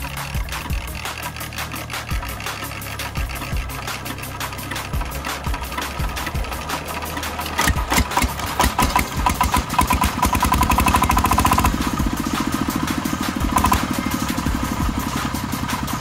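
Stationary single-cylinder diesel engine running with slow, widely spaced firing knocks that pick up about eight seconds in into a fast, steady chugging, loudest for a couple of seconds before settling.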